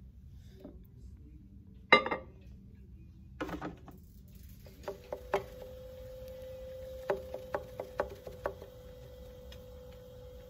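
A loud thump about two seconds in, then an electric potter's wheel motor starts up and hums steadily while wet hands slap and press a lump of clay on the spinning wheel head to center it.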